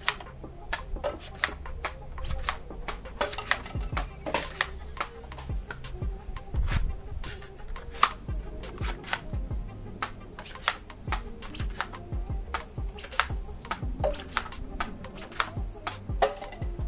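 Background music over a run of sharp, irregular clicks and snaps: a bungee-powered foam-dart blaster being fired and cocked, its darts striking plastic cups.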